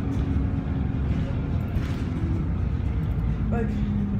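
Steady low rumble of a bus's engine and running gear, heard from inside the passenger cabin.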